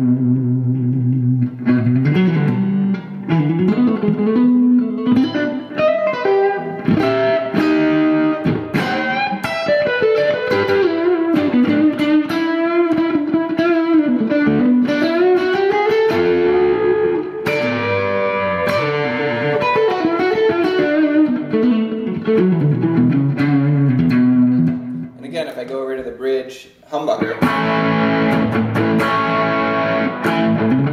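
Electric guitar on its single-coil setting played through a Boiling Point overdrive pedal into a Fender DeVille 410 amp. The overdrive is mild, with a little more mid-range and a little less bottom. Single-note lines and held chords play throughout, with a short break about 25 seconds in before a fuller chord sound returns.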